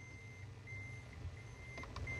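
Quiet pause: a faint low rumble, with a thin high beep-like tone that cuts in and out several times.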